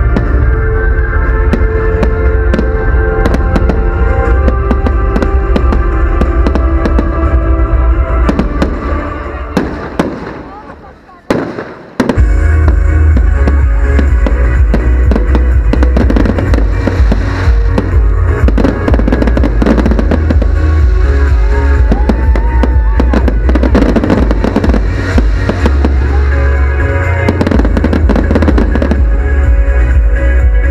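A fireworks display: rapid shell bursts and crackle over loud music with a heavy bass. Both fall away briefly about ten seconds in, then the bursts resume and the music comes back with a heavy bass beat about twelve seconds in.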